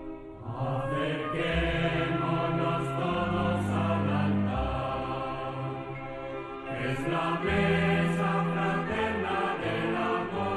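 Communion hymn: voices singing over a sustained instrumental accompaniment, with a low held bass. It swells in about half a second in.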